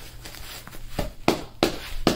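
Hands patting and pressing a plate carrier's fabric flap down over the plate, heard as four short thumps and rustles in the second half.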